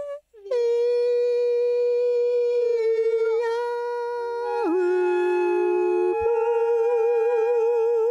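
A woman's voice holding a long wordless, hum-like sung note, part of an improvised vocal piece. A second, lower held note overlaps it about halfway through. Near the end the main note wavers in a slow vibrato, then stops cleanly.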